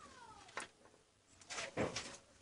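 A cat meowing once, its pitch falling, over the first half second. A sharp click follows, and near the end a louder, short burst of rustling noise.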